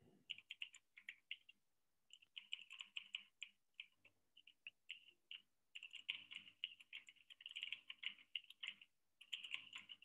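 Faint typing on a computer keyboard: quick runs of key clicks with short pauses between them, the longest about four to five and a half seconds in.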